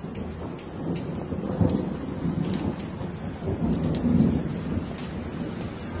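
Low rumbling noise over a steady hiss with scattered faint clicks, swelling louder about one and a half seconds in and again past four seconds, like a recording of rain with rolling thunder. No music is playing.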